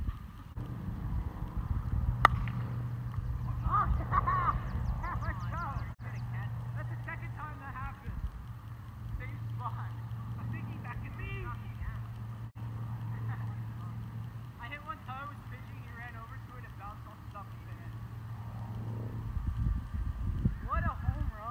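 Distant voices of people calling across an outdoor game over a steady low hum, with one sharp crack about two seconds in.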